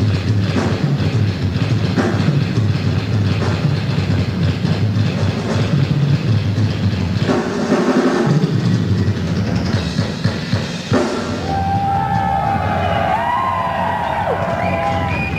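Live progressive metal band playing loud, with dense fast drumming under bass and distorted instruments. About eleven seconds in the drums drop away and a held lead melody with pitch bends carries on alone.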